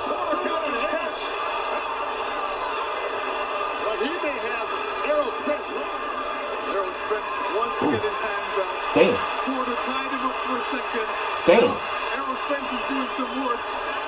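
Televised boxing broadcast playing: a commentator's voice over steady arena crowd noise, with two short sharp sounds standing out about nine and eleven and a half seconds in.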